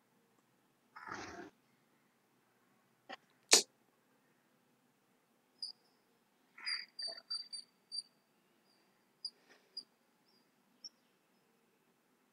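A short rustle, then two sharp clicks, the second loud, followed by two runs of short, high chirps from a small animal, several a second.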